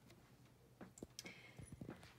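Near silence with a few faint clicks and taps in the second half, from a power cord's plug and cable being handled at the back of a landline base unit.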